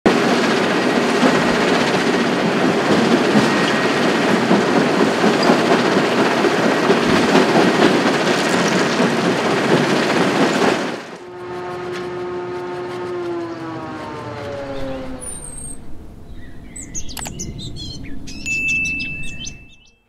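Hidromek 390 tracked excavator working in a quarry, with a loud, continuous rattle of rock going from its bucket into a mobile crusher's hopper for about the first ten seconds. The noise cuts off abruptly. It is followed by a set of falling tones, then short high chirps and a steady high beep near the end.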